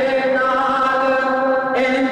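A man singing a Punjabi naat unaccompanied, holding a long, steady note, with a short hiss of a consonant or breath near the end before the next note.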